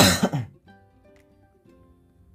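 A person clears their throat once, a loud burst lasting about half a second at the very start, over quiet background music of held notes.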